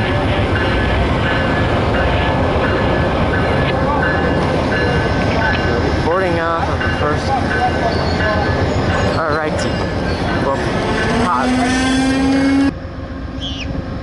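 A VIA Rail passenger train standing at the platform with its engine and car equipment running in a steady rumble. Faint voices come and go around the middle. A single steady tone sounds for about a second near the end, and then the sound cuts off abruptly.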